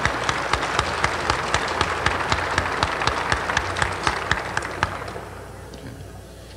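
Audience applauding in a hall, a dense patter of many hands clapping that dies away about five seconds in.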